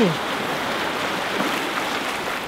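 Shallow surf washing up the beach over sand, a steady rush of water.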